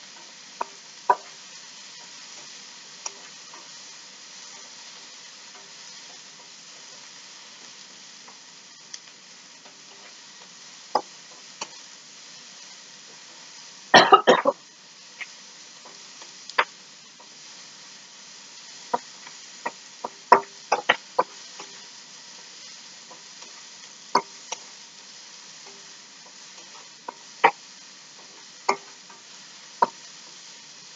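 Cubed zucchini sizzling in a hot wok, with a wooden spatula knocking against the wok in scattered sharp clicks as it is stirred. A brief louder burst of noise about halfway through.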